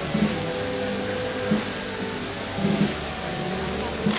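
Procession band playing a slow march, with held notes and a deep drum beat about every second and a quarter.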